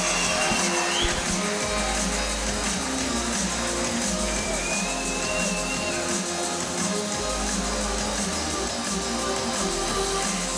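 Music playing steadily, with a held melodic line that glides in pitch, under some voices.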